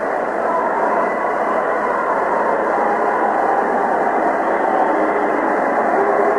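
Arena crowd noise from an old, band-limited TV hockey broadcast: a steady crowd hubbub that swells slightly, following a high-sticking penalty call.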